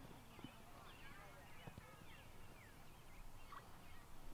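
Faint open-air ambience: birds chirping in many quick, short calls, with faint distant voices.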